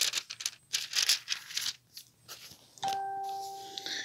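Rustling, crinkling handling noise for about two seconds, then a steady electronic beep, a single held tone lasting about a second, near the end.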